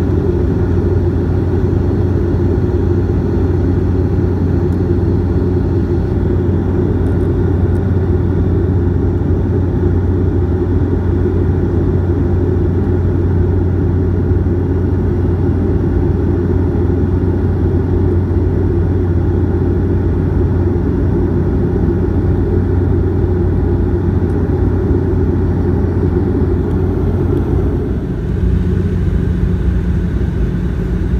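Cabin noise of a Bombardier Q400 turboprop in flight: the steady, loud drone of its propellers and engines, with a strong low hum. The sound shifts slightly and dips briefly near the end.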